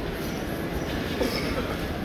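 Steady rumbling background noise of a large, busy airport terminal hall, with faint scattered sounds about a second in.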